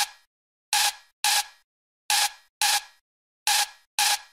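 Break in a hard techno (HardTekk) track: the kick and bass drop out, leaving a short, bright percussion hit with a faint tone in it, repeating in pairs about half a second apart, the pairs about one and a half seconds apart, with silence between.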